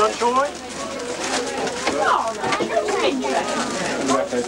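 Indistinct chatter of children's voices.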